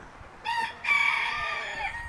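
A rooster crowing: a short first note, then a long held note of about a second that drops in pitch at the end.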